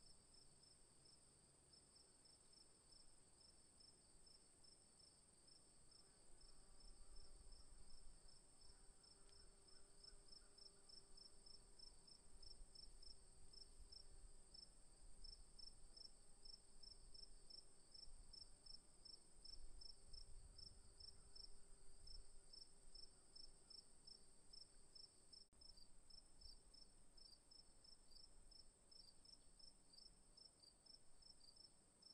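Faint chorus of night insects. A steady high trill runs under a chirp pulsing about three times a second, with a faint low rumble now and then.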